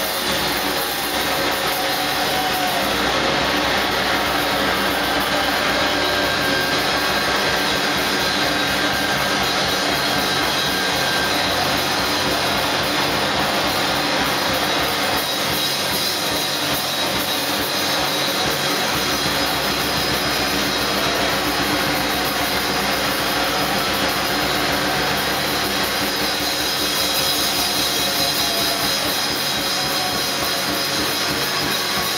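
A noise-rock band playing live: a loud, steady, dense wall of distorted noise with no clear beat.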